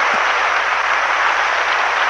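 Large audience applauding steadily.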